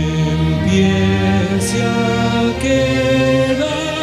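String ensemble of cellos and double basses playing loud, sustained bowed chords that move to a new chord every second or two.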